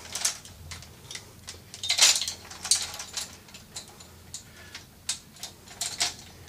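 Light clicks and knocks of an airsoft PKM machine gun replica being handled and turned over, with one louder clack about two seconds in.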